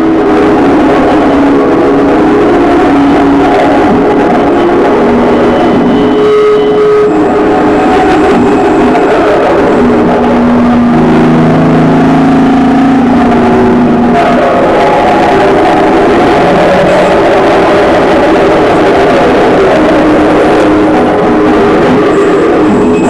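Live noise music played loud: a continuous wall of distorted noise with droning held tones that change pitch every few seconds.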